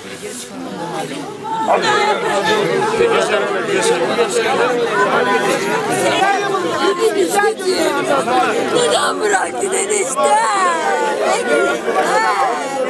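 Grieving women crying and wailing over a coffin, several voices overlapping in lament, louder from about two seconds in, with falling wails near the end.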